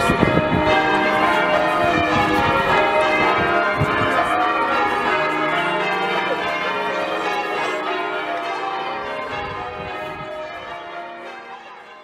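Bristol Cathedral's bells ringing a celebratory peal: many bells struck in quick succession, their tones overlapping, growing fainter over the last few seconds.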